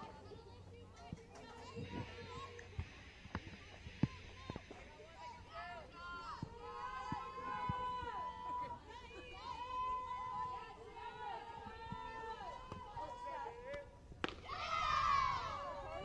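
Distant voices of softball players calling and chanting across the field, with a few sharp knocks in the first four seconds and a louder shout near the end as the pitch comes in.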